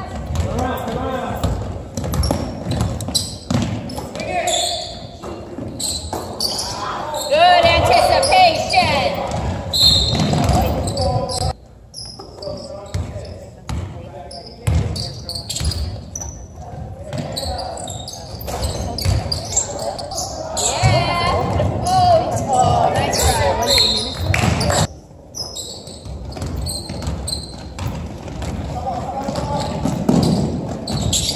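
Basketball bouncing on a hardwood gym floor during play, amid indistinct shouts and voices from players and spectators.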